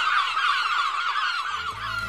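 A high warbling tone with a fast, even wobble, held and then fading near the end.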